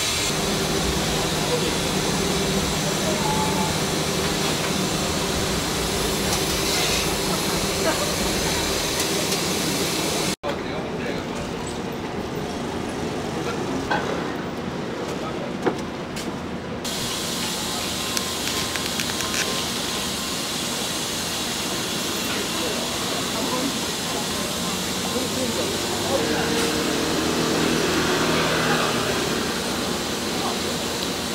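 Steady hiss of a street-stall dumpling steamer amid street noise and background voices, broken by a brief dropout about ten seconds in.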